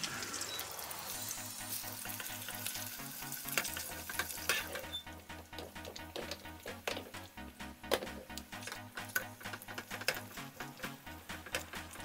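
Butter sizzling in a frying pan with a salmon fillet and asparagus: a steady hiss for the first few seconds, then joined by many short, sharp crackles and clicks.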